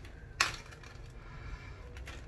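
A single sharp click about half a second in, from a small plastic sample tub in a plastic bag being handled, followed by faint room noise.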